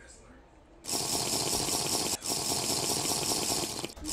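Liquor gurgling out of a large glass bottle as it is tipped up and chugged. It runs as a steady, rushing gurgle from about a second in, with one brief break about two seconds in.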